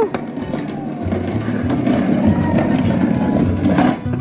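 Background music, with the rumble of a plastic ride-on toy car's hard plastic wheels rolling off a toy roller-coaster track and across concrete.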